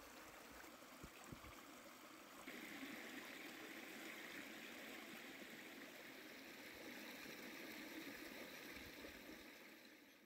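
Faint, steady rush of a flowing stream, a little louder from about two and a half seconds in.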